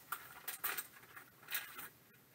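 Paper sleeve rustling as a plastic graded-card slab is slid out of it, in a few short faint scrapes.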